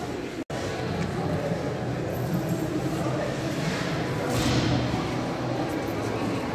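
Indistinct voices in a large echoing hall, with a brief drop to silence about half a second in.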